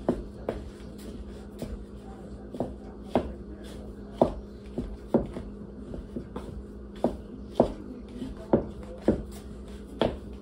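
Wooden spoon knocking and scraping against a mixing bowl while stirring a thick pie-crust dough: about a dozen short knocks, roughly one or two a second, over a faint steady hum.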